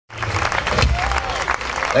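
Audience applauding, the clapping cutting in abruptly at the start, with a steady low hum underneath.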